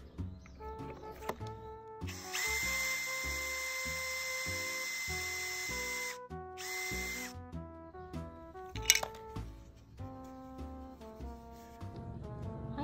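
Cordless drill running with a steady high whine as a 4 mm bit bores through a round wooden dowel. It runs for about four seconds, stops briefly, then gives a second short burst. A sharp click comes near the end, over background music.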